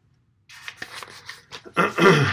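A man clearing his throat near the end, after about a second of soft rustling noise.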